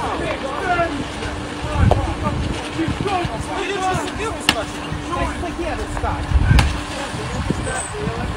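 Outdoor phone-video sound: the voices of several people talking over one another, with low rumbling on the microphone. A steady hum runs until about six and a half seconds in, and two sharp clicks stand out.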